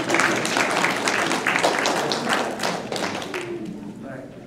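Audience applauding, a dense run of hand claps that fades toward the end.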